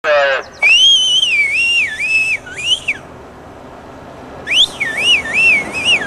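A spectator's loud, shrill whistle in two long warbling runs, the pitch dipping and rising repeatedly, with a pause of about a second and a half between them. A brief falling call sounds right at the start.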